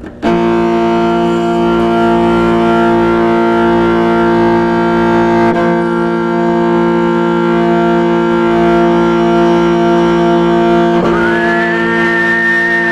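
Morin khuur (Mongolian horsehead fiddle) being bowed: one long, steady sustained sound held for about eleven seconds, then a note slides up to a higher pitch near the end.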